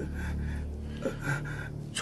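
Low, sustained film-score drone with a few short, breathy gasps over it.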